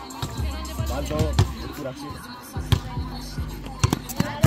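A basketball thudding as it bounces and hits the backboard and rim: a few sharp knocks, two of them close together near the end. Music and voices carry on underneath.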